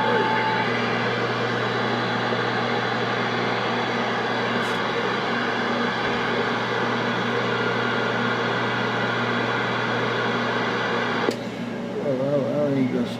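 Steady hiss of static with a low hum from a Galaxy CB radio's speaker, cutting off abruptly near the end.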